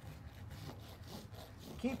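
Farrier's hoof rasp being drawn across a horse's hoof wall in faint filing strokes.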